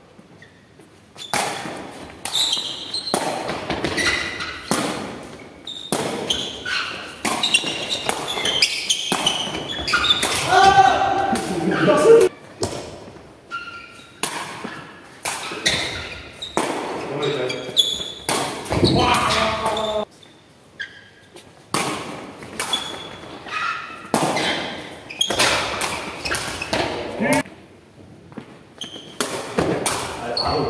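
Sepak takraw ball being kicked back and forth: many sharp, irregular impacts of the ball on feet and the floor, echoing in a large sports hall, with short pauses between rallies.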